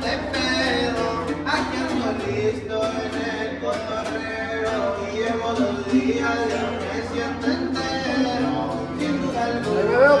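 Acoustic guitars playing a regional Mexican song, with a man singing over them.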